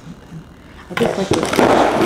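Cardboard box being torn open, starting about a second in: a dense run of crackling and ripping as the cardboard and packaging are pulled apart.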